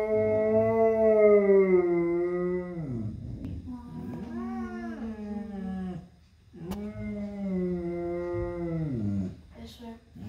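A dog howling in reply to a flute: a long held howl that falls in pitch at its end, a few shorter rising-and-falling howls, then another long howl that falls away.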